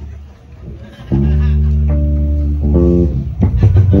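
Live band amplified through a PA, electric bass guitar to the fore, coming in about a second in with a loud held chord. The chord changes and a rhythmic groove begins near the end.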